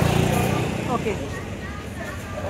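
Street sound: a motor vehicle's low engine rumble, loudest in the first half second and then fading, with people talking in the background.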